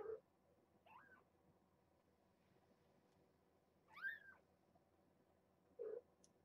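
Young kittens mewing: two short, high mews that rise and fall in pitch, a faint one about a second in and a louder one about four seconds in. A brief dull noise sounds right at the start and another just before the end.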